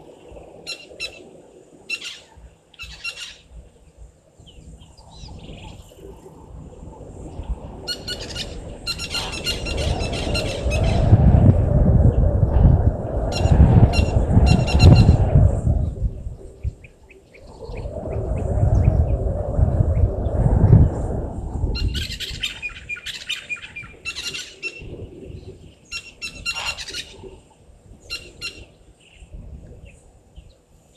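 Wild birds calling throughout in short, repeated squawking and chirping notes. Two long swells of low rushing noise in the middle are the loudest sounds.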